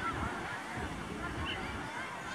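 Faint, distant voices of players and spectators calling across a football pitch, over a low outdoor rumble, with one brief higher call about one and a half seconds in.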